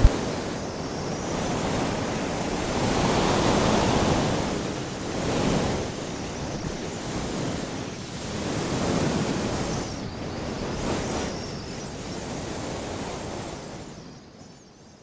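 Outdoor wind and sea noise by open water, a steady rush that swells and eases every few seconds.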